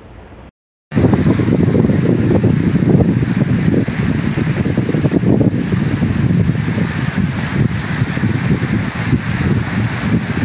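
Waves washing onto a beach, with wind buffeting the microphone in a loud, steady rush. It starts abruptly about a second in, after a moment of silence.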